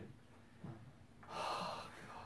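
A person's gasp: a sharp, hissy intake of breath a little past halfway, lasting well under a second, after a quiet stretch.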